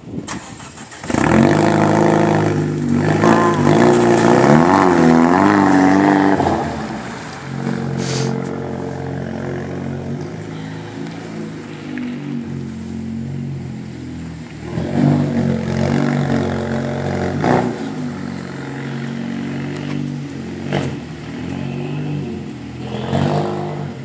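Opel Astra OPC Cup race car's engine coming in loud about a second in and revved hard with quick rises and falls in pitch for several seconds. It then runs on more steadily at lower revs, rising again around the middle of the clip, with a few sharp clicks.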